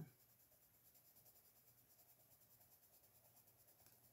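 Very faint scratching of a Crayola Colors of the World colored pencil shading on paper, in quick, even strokes, barely above room tone.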